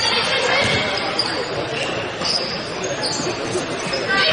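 A basketball being dribbled on a hardwood gym floor, with high sneaker squeaks and spectators talking.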